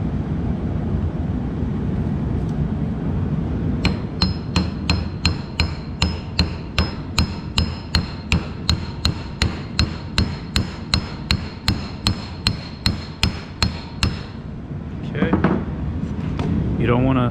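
Light hammer taps, about three a second for some ten seconds, driving the rotary vane pump's rotor down onto the motor shaft; each strike gives a short metallic ring. A steady low hum runs underneath.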